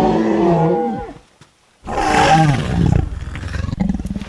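Two dinosaur roar sound effects, loud and growling, each falling in pitch as it dies away. The first fades out about a second in and the second starts about two seconds in.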